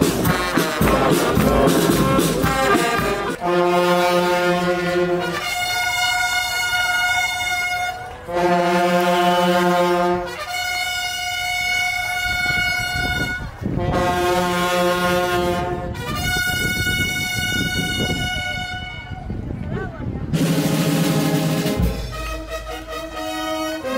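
Brass band playing slow, long held chords that alternate between a lower and a higher note, each held for two to three seconds. The opening few seconds are busier.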